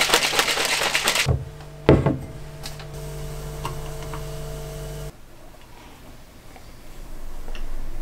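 Protein shake sloshing and rattling in a plastic shaker bottle as it is shaken hard for about a second, then a single knock, then the shake being poured from the shaker into a glass.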